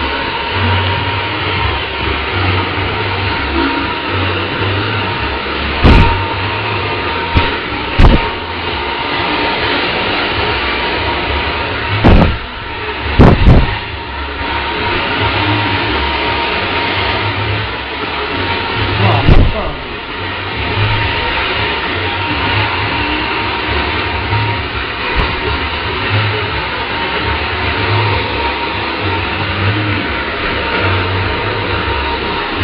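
Steady, noisy hair-salon background with people talking, broken by a few short, loud knocks in the middle.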